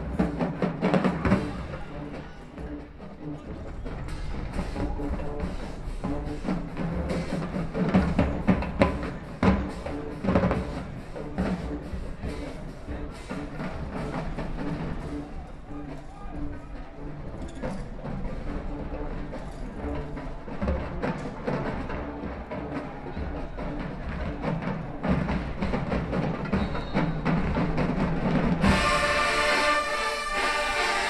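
Marching band drumline playing a percussion cadence: a steady run of drum hits. About a second before the end, the full brass section comes in with loud sustained chords.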